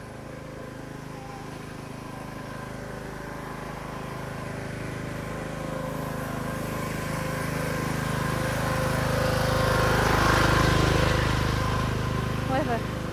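A motor vehicle's engine hum that grows steadily louder and is loudest about ten to eleven seconds in, then eases off as it passes.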